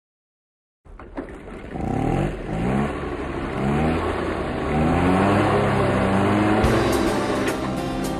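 Car engine accelerating hard through the gears, starting about a second in: its pitch climbs, drops back at each shift and climbs again, each gear held a little longer. Music comes in near the end.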